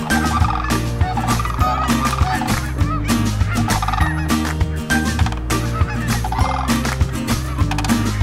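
A flock of sandhill cranes calling in several bursts of wavering, rolling calls, over background music with a steady beat.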